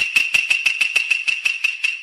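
Logo-intro sound effect: a high ringing tone struck over and over in quick even hits, about six a second, growing fainter toward the end.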